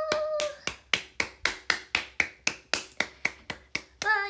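One person clapping their hands in a steady, even rhythm of about four claps a second, some thirteen claps in a row. A voice holds a short note at the very start.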